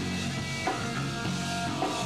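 Live rock band playing: electric guitar and bass over a drum kit, with hard accents about once a second.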